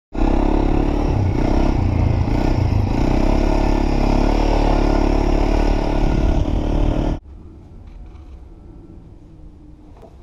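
Quad (ATV) engine running steadily as it is ridden, loud and close. About seven seconds in it cuts off abruptly to a much quieter low background.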